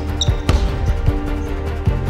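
A basketball being dribbled on a hardwood gym floor: several short, uneven bounce thuds, one sharper than the rest about half a second in. Underneath runs background music with sustained notes and a steady bass.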